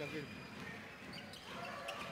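A basketball dribbled on a hardwood court, with a low murmur of the arena crowd behind it.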